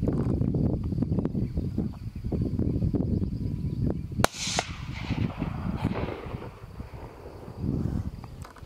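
A single hunting rifle shot about four seconds in, its report trailing off in a short echo, over a steady low rumble.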